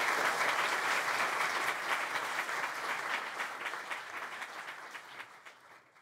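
Audience applauding, the clapping gradually fading away toward the end.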